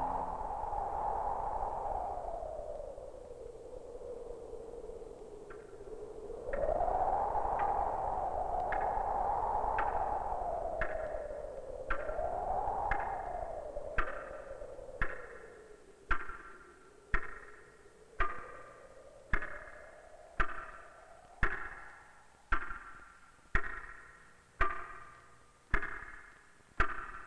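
Electronic film score: an eerie wavering tone slides slowly up and down, then sharp sonar-like pings come in about once a second, each ringing briefly, growing louder until they are the loudest sound by the second half.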